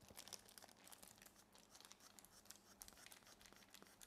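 Near silence with faint crinkling and small clicks of thin plastic gloves as a hand handles a squeeze-bulb spray marker.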